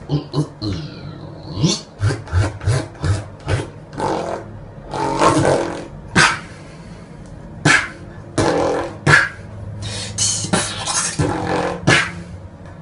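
Human beatboxing: mouth-made kick-drum thuds, snare and hi-hat hisses and clicks in a fast, uneven rhythm, with a sustained low humming bass note a little after ten seconds in.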